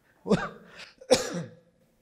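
A man clearing his throat twice: two short throaty sounds about a second apart, the second louder.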